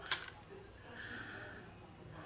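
A single sharp plastic click as a built-in charging cable is worked out of its slot in a power bank's casing, followed by faint handling noise.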